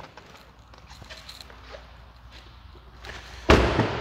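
Faint rustling and movement, then a single loud thump about three and a half seconds in: the SUV's car door being shut.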